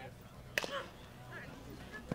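One sharp crack, which fits a softball bat hitting the ball, about half a second in.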